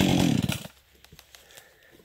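Husqvarna 550 XP G two-stroke chainsaw running at a steady, unrevved pitch, then switched off about half a second in, its engine dying away fast. A few faint clicks follow.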